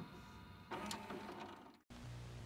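Faint whirring of a VCR's tape mechanism, with a soft mechanical rattle about two-thirds of a second in, cutting out to silence just before the end.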